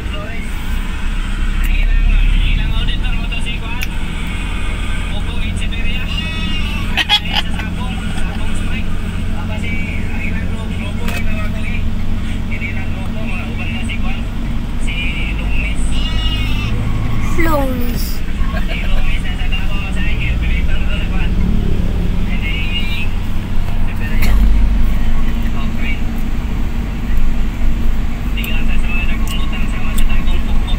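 Engine and road noise from a moving car, heard from inside the cabin as a steady low rumble, with indistinct voices over it.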